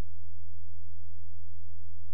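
A steady, low-pitched hum with nothing else over it.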